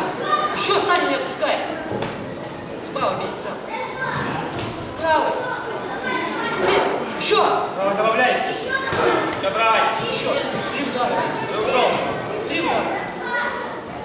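Indistinct voices calling out in a large, echoing sports hall, with a few sharp thuds among them.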